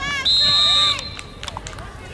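Referee's whistle: one short, steady blast starting about a quarter of a second in and lasting well under a second, blowing the play dead after a tackle. Spectators' voices are heard around it.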